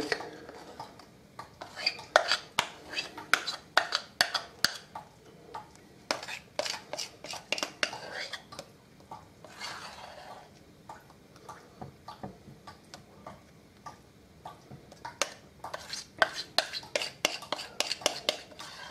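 A metal spoon scraping and tapping against a glass mixing bowl as thick cake batter is scraped out into a cake tin. The sound comes in quick runs of clicks and scrapes, with a quieter stretch in the middle.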